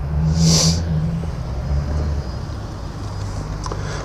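Car engine running close by, a low hum that is loudest in the first two seconds, with a short hiss about half a second in.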